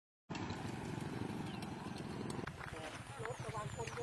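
A motorcycle engine running with a rapid low pulse, which stops abruptly about two and a half seconds in; after that, people talking.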